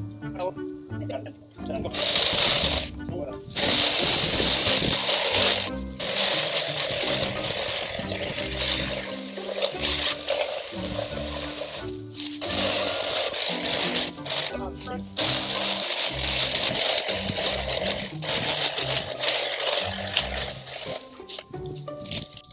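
Milwaukee M18 cordless articulating hedge trimmer running in long bursts, its reciprocating blades cutting through the woody stems of overgrown snowball bushes. The first burst starts about two seconds in, with short pauses between cuts, over background music.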